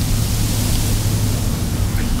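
Steady city street background noise: an even hiss with a low, constant hum underneath, unchanging throughout.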